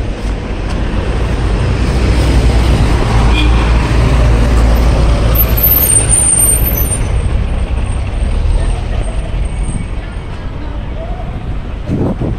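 Street traffic: a large vehicle's engine rumbling past. It swells over the first couple of seconds and eases off toward the end, with a brief high squeal about six seconds in.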